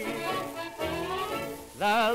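1931 dance orchestra playing a short instrumental fill between sung lines on an old 78 rpm shellac record, with a rising glide in the middle and a faint surface hiss. Near the end a tenor with strong vibrato comes back in.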